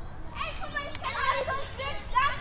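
Children playing and shouting in the street, several high voices overlapping, starting about half a second in.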